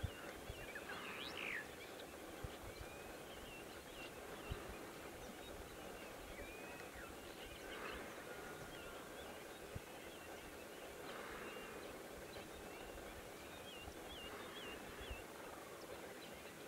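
Faint open-air ambience: scattered short chirps of small birds, a few at a time, over a steady low wind rumble.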